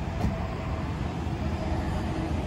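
Steady low rumble and hiss of outdoor background noise, with a faint steady hum running through it.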